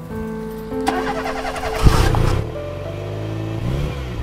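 Background music with held notes over an old taxi's engine being started: a noisy stretch with a sharp thump about two seconds in, then the engine running and rising in pitch near the end.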